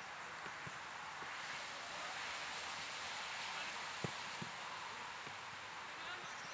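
Steady outdoor hiss of wind and rustling leaves around a grass football pitch. A few faint, distant thuds of the ball being kicked come through it, the clearest about four seconds in.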